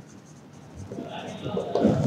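Felt-tip marker scratching across a whiteboard as words are written, growing louder in the second half.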